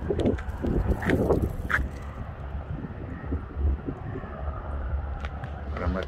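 Wind buffeting the phone's microphone, a continuous low rumble, with a few faint voice-like sounds and clicks in the first two seconds.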